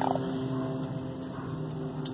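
A motor running steadily: a low, even hum of several held tones.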